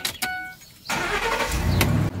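Truck's warning chime dings, then the starter cranks and the engine catches about a second and a half in and settles into a steady idle.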